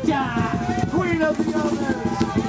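Live rock band playing, with drums and electric guitars under a singer's voice that slides between held notes.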